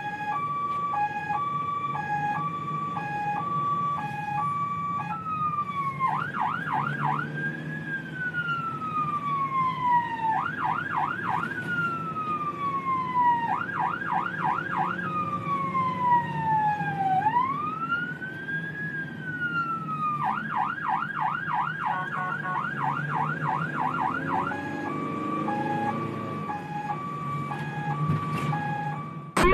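Emergency-vehicle siren heard from inside the cab: a two-tone hi-lo pattern, then long falling wail sweeps broken up by bursts of fast yelp, then back to the hi-lo tones near the end. A low engine and road hum runs underneath.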